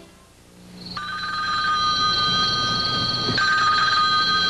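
Telephone bell ringing: one long, trilling ring that starts about a second in.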